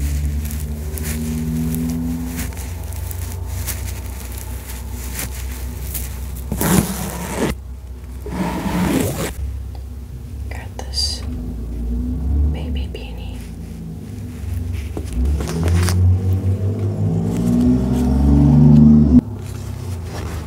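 Plush Beanie Baby toys rubbed and brushed against a foam-covered microphone, giving low rumbling handling noise with scratchy brushing. Two louder rustling passes come about seven and nine seconds in, and the rubbing grows loudest near the end before stopping abruptly.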